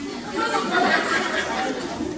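Several people talking at once in a large hall, their words jumbled and hard to make out.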